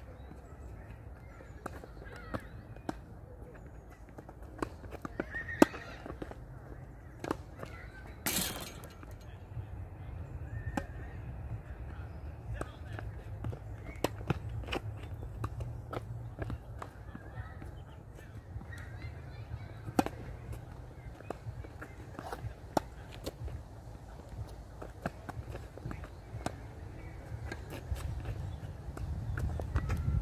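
Tennis rally: sharp racket strikes on the ball and ball bounces at irregular spacing, starting with a serve, over a steady low rumble. A short hiss comes about eight seconds in.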